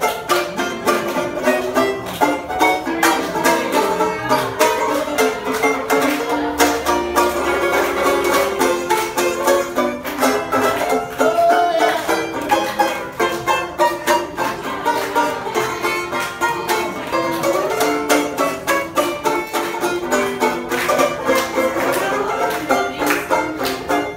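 Banjo played solo, a steady stream of quickly picked notes without a break.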